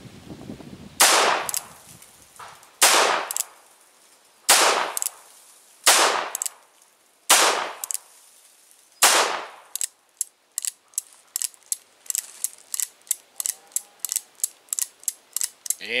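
Six shots from a .38 Special single-action revolver, each ringing out, about one and a half seconds apart. Then a quick run of light clicks as the revolver's action turns the cylinder over the fired cases, turning freely with no binding.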